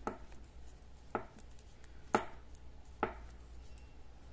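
Knitting needles clicking against each other as stitches are purled: four short sharp clicks about a second apart, the third the loudest.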